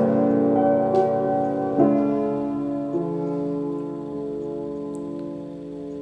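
Piano playing an instrumental passage: a few chords struck about a second, two seconds and three seconds in, each left to ring and fade slowly.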